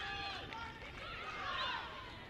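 Open-air football pitch ambience: distant players' shouts and calls over a steady background hiss, one longer call about one and a half seconds in.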